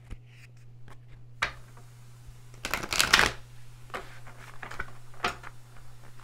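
A deck of tarot cards being shuffled by hand. There is a single card snap about a second and a half in, then a quick dense run of card flicks about three seconds in, followed by scattered light card taps.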